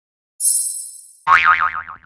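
Intro logo sound effects: a bright, high ringing chime that fades over about a second, then a louder twangy tone whose pitch wobbles rapidly up and down as it dies away.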